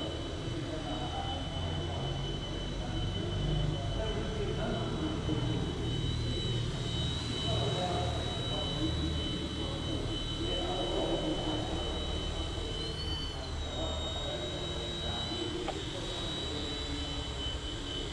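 Eachine E129 micro RC helicopter flying low, its motor and rotor giving a high, steady whine that rises briefly in pitch twice as the throttle changes, most clearly about thirteen seconds in.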